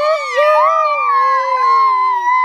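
Several children's voices holding long, wavering high notes together, overlapping at different pitches and sliding slowly downward.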